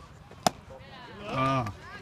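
A single sharp crack about half a second in, the loudest sound here, then a short call from a voice with its pitch falling.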